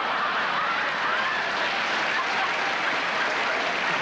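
Studio audience laughing and applauding, a steady sustained wave of laughter and clapping.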